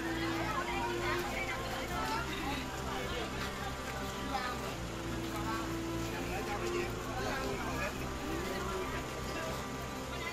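Voices of several people talking in the background, over music with low held notes that change every few seconds.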